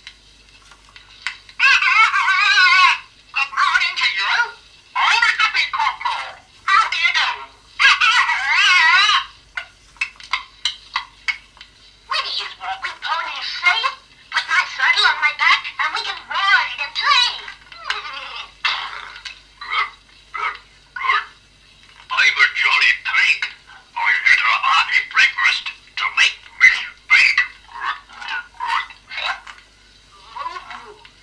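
Toy talking-story record playing a voice telling an animal story. The words are mostly unintelligible, and the voice is high and thin with a wavering pitch.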